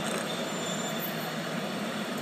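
Steady noise of a vehicle running, with a faint high-pitched tone lasting about half a second near the start.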